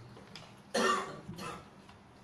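A man coughs once, loud and sudden, about three-quarters of a second in, followed by a fainter second cough.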